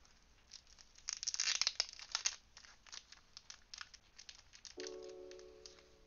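A second or so of rapid clicking and crinkling, then scattered faint clicks. Near the end a held chord of several steady musical tones begins.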